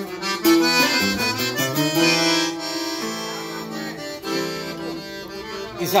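Live norteño corrido instrumental passage: a button accordion plays a melodic line of changing notes and held chords over a strummed acoustic guitar.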